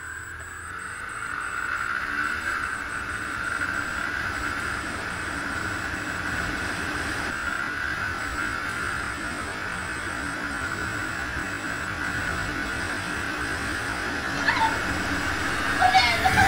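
Motorcycle riding along at a steady speed: a steady engine whine with wind and road noise on the bike-mounted camera's microphone. It grows louder about two seconds in, then holds.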